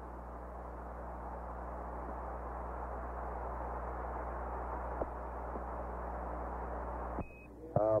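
Radio static on the Apollo 8 air-to-ground loop: a steady hiss over a low hum, slowly growing louder. About seven seconds in the hiss cuts off with a short high beep, a Quindar tone keying Mission Control's transmission, and a voice begins.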